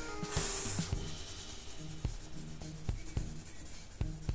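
A paper blending stump rubbing graphite into drawing paper, with one louder, scratchy stroke about half a second in and softer rubbing after it. Soft background music plays underneath.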